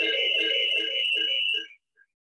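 Electronic audio playing from a smartphone: a voice-like sound over a steady high tone, with a short beep about four times a second. It cuts off abruptly near the end.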